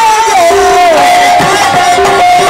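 A man's voice holding one long, loud sung note in a qawwali, sliding down about half a second in and then holding steady, with crowd noise beneath it.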